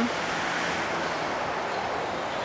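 Steady street traffic noise: the even hiss of passing cars, with no single event standing out.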